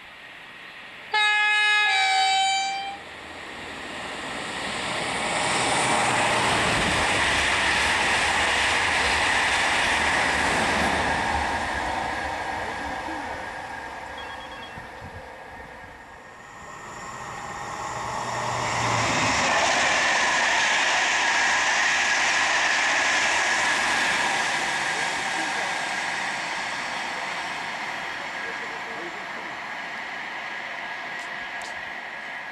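A high-speed TGV trainset sounds a short two-note horn blast about a second in. It then runs past at line speed with a long rush of wheel and air noise that swells and fades. A second passing rush swells again around the middle and dies away toward the end.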